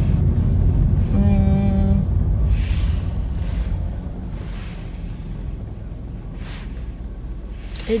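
Low road and engine rumble inside a moving car, growing quieter over the first few seconds. A brief steady tone about a second in.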